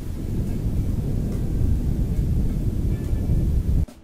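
Wind buffeting the microphone of a paraglider's camera in flight: a loud, steady low rumble that cuts off abruptly just before the end.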